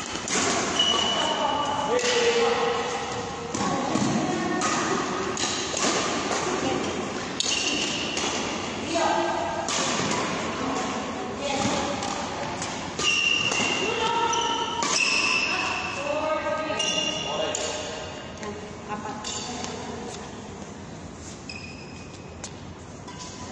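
Badminton doubles rally in an echoing sports hall: sharp racket strikes on the shuttlecock and shoes squeaking on the court mat, with the activity easing off near the end.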